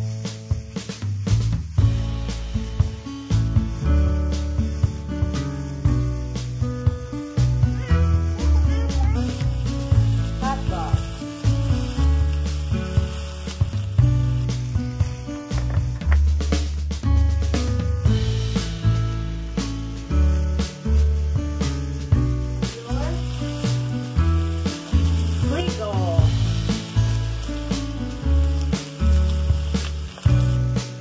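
Background music with a steady bass line and beat. Beneath it, ground meat and diced sausage sizzle in a frying pan as they are stirred.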